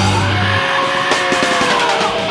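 Instrumental break in a rock song, no singing: a held bass note stops about half a second in, leaving long held notes that glide slowly in pitch over a thin backing.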